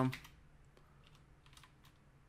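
A few faint, scattered keystrokes on a computer keyboard.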